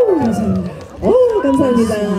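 A woman's voice in long sliding vocal wails: one falls away, then after a brief dip about a second in another rises and falls, at the close of a trot song.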